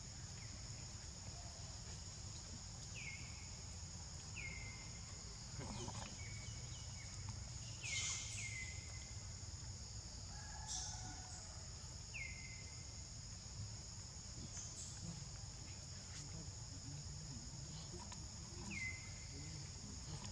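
Steady high-pitched insect drone, like cicadas or crickets, with a short falling chirp every few seconds and a low background rumble.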